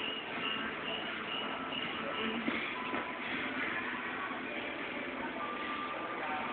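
Faint background music under a steady hiss of room noise, with no distinct thuds or impacts.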